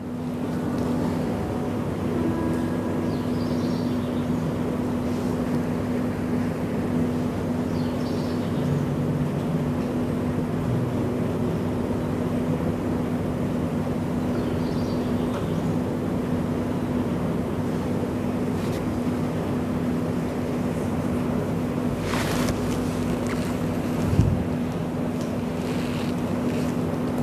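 A steady low mechanical rumble with a constant low hum, with a brief swell near the end and a single soft thump just after it.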